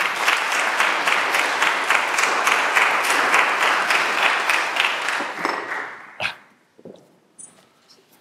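Congregation applauding in a church hall, dying away after about five or six seconds, followed by a single thump.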